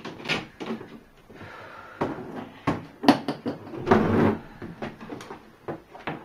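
Handling noises on a desk: a string of clicks and knocks, with a brief rustle about four seconds in, as a book and an aluminium case are handled.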